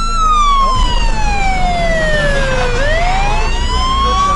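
Police car siren wailing: one tone falls slowly for nearly three seconds, then climbs again near the end, over a low rumble.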